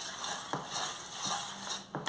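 Wire whisk stirring thick, wet bread dough in a stainless steel bowl: soft scraping and stirring, with a few light clicks of the whisk against the bowl.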